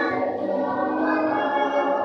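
A choir singing, with several voices holding sustained notes together.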